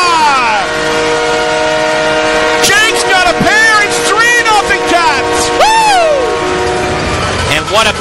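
Arena goal horn sounding a steady multi-tone chord after a goal, stopping about seven seconds in. Several rising-and-falling shouts come over it partway through.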